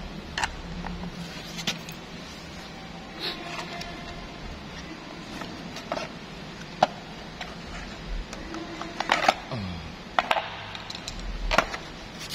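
Plastic air-conditioner blower housing being pried and pulled apart: scattered sharp clicks and knocks of plastic clips and the screwdriver against the casing, coming thickest near the end.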